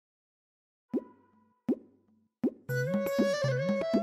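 Background score: after about a second of silence, three separate plopping drum hits fall in pitch, about three-quarters of a second apart. Then music with a bouncing, repeating bass rhythm and a held wind-instrument melody comes in.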